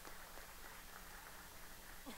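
Faint, scattered applause from an audience: a few people clapping unevenly.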